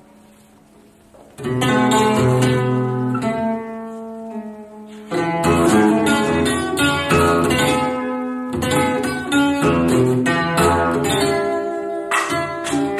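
Solo acoustic guitar played live with hard, abrupt picking. After a brief quiet lull it comes in suddenly and loudly about one and a half seconds in, eases off, then surges again around five seconds in into a dense run of sharply struck notes.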